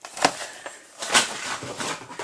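Clear plastic blister packaging of a die-cast toy car being handled: crackling with sharp clicks, the loudest about a quarter second in and just over a second in.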